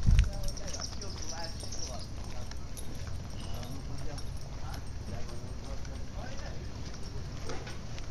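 Indistinct voices of people talking in the background over a steady low rumble, with a sharp thump right at the start.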